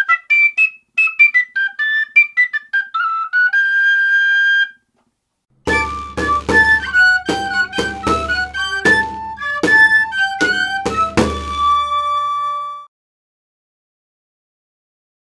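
A three-hole tabor pipe plays a quick run of high overtone notes that ends on a held note. After a short pause, a pipe-and-tabor tune follows: the pipe's melody over regular drum strokes on the tabor, closing on a long held note.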